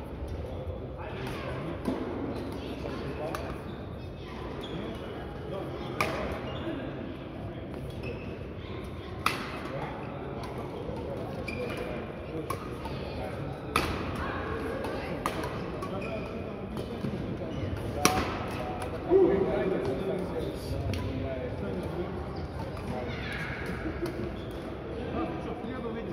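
Badminton rackets striking a shuttlecock: sharp smacks a few seconds apart, about five in all, in a large hall with background voices and chatter.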